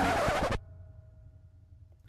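A man's singing voice, which breaks off abruptly about half a second in. After that only a quiet room with a faint steady hum remains.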